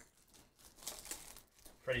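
Chrome trading cards sliding against one another as the front card of a handheld stack is moved to the back, a faint dry rustling.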